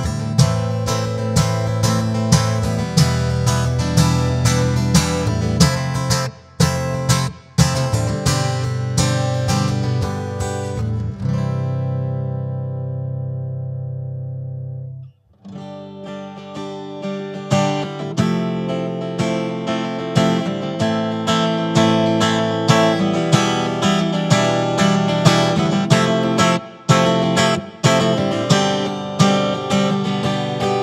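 Line 6 James Tyler Variax modeling guitar on its modeled acoustic sound (acoustic position 5), with chords picked and strummed. About halfway through, one chord is left to ring out and fade, then the playing starts again.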